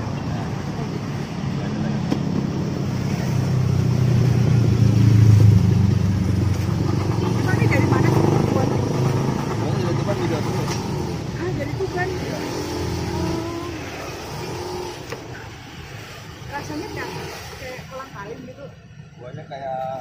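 A motor vehicle engine passing close by, its low hum growing louder to a peak about five seconds in and fading away by about fourteen seconds, with voices underneath.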